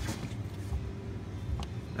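Steady low background hum with two faint clicks, one just after the start and one about one and a half seconds in.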